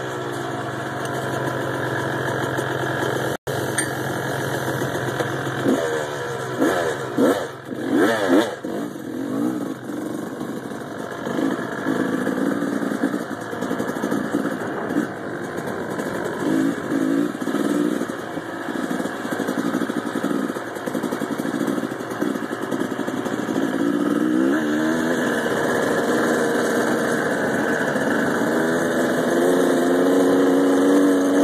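Small off-road vehicle engine running and revving, its pitch rising and falling repeatedly through the first half, then settling into a steadier run that grows louder near the end. The sound cuts out for a split second about three seconds in.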